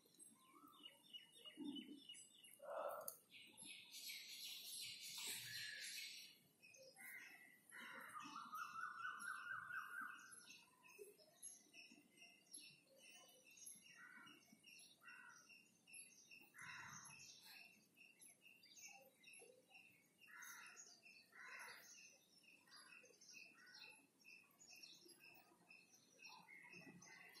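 Faint bird chirping: an even series of short, high chirps repeating a few times a second, with a short fast trill about a third of the way in.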